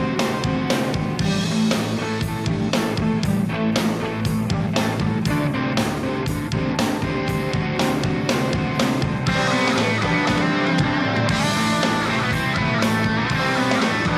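Rock music with guitar, bass and drums, the drum hits coming about three a second. About nine seconds in, the sound fills out with brighter, denser guitar.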